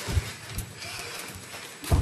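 Boxing sparring in the ring: a few irregular dull thuds of padded gloves and footwork on the canvas, the strongest just after the start.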